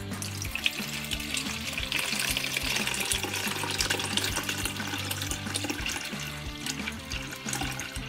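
Celery juice pouring in a steady stream from a juicer jug through a stainless steel mesh strainer into a bowl, easing slightly near the end. Background music plays underneath.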